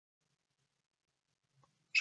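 Near silence, with a man's voice starting to speak at the very end.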